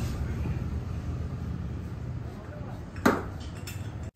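Metal-on-metal clink as a motorcycle front fork cap bolt is hand-tightened with a socket, one sharp click about three seconds in, over a steady low workshop hum.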